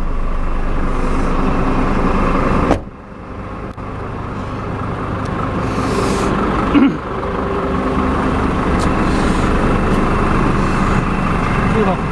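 Hino truck's diesel engine idling steadily. About three seconds in a sharp knock sounds and the engine is then heard more faintly, growing gradually louder again; a second knock comes near seven seconds.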